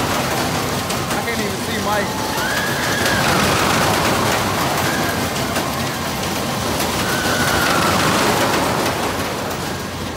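Riders on a Ring of Fire loop ride screaming in several drawn-out cries over a steady wash of fairground crowd and machinery noise.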